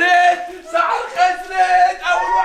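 A group of people yelling in loud, long held cries, reacting to ice-cold water.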